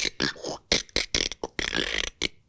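A man's voice making beatbox-style vocal sound effects into a close microphone: a quick series of breathy, hissing bursts and sharp mouth clicks, performed as one layer of vocal imitations of trailer sound effects.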